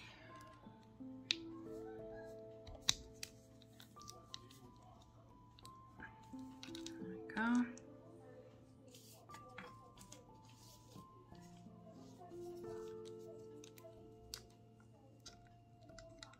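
Soft background music with long held notes, over scattered light clicks and taps of plastic press-on nail tips being handled and pushed onto foam holders.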